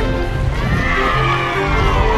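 Background music with a horse-whinny sound effect starting about half a second in, a shaky call that falls in pitch.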